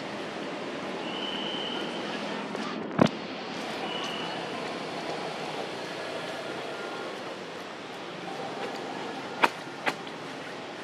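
Steady outdoor background noise with faint voices, broken by one sharp click about three seconds in and two more clicks close together near the end.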